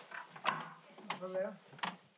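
Three faint sharp clicks about two-thirds of a second apart, with a little low murmured speech between them.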